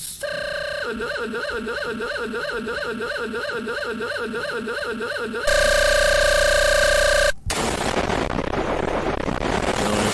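YouTube Poop sound edit. A warbling tone repeats about three times a second for about five seconds, then a louder steady tone holds for a couple of seconds and cuts off suddenly. An explosion's noise follows.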